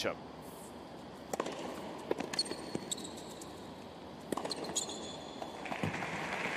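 Tennis ball struck back and forth by rackets in a short rally on a hard court: a handful of sharp pops, the first about a second and a half in, with shoes squeaking on the court surface. Crowd applause starts just before the end.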